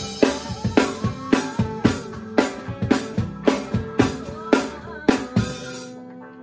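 Acoustic drum kit played along with a rock song: bass drum and snare strokes about twice a second, each with a cymbal wash. The drumming stops shortly before the end, and the song's last chord rings on and fades.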